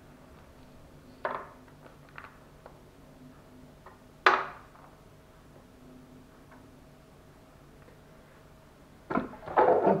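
A few short handling sounds from a plastic mustard sachet being squeezed by hand over a bowl of seasoned meat, over a faint steady hum. The loudest is a single sharp sound a little past four seconds in.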